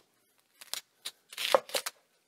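A chef's knife slicing straight down through a raw onion on a wooden cutting board: a run of short, crisp crunches starting about half a second in, thickest in the second half.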